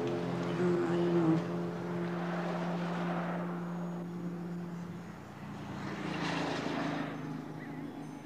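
Motor traffic passing on a street: a steady engine drone, with the rush of one vehicle fading away over the first few seconds and another passing about six to seven seconds in.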